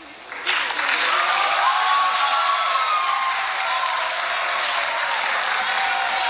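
Audience applause from a large crowd, with some cheering, rising in about half a second in and holding steady.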